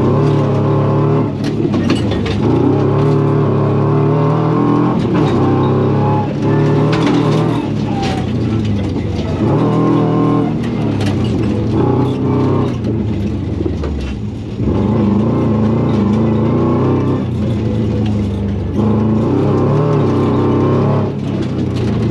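Rally-prepared Subaru's flat-four engine heard from inside the cabin, revving hard and dropping back again and again as the driver shifts and lifts through a dirt autocross course. Frequent sharp ticks and rattles from the loose surface ride over the engine.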